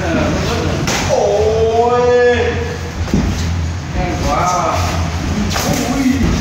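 A long drawn-out "ohh" shout about a second in, falling in pitch and then held, and a shorter call about four seconds in: the calls of Muay Thai sparring. Sharp thuds of strikes landing come just before the first call and near the end.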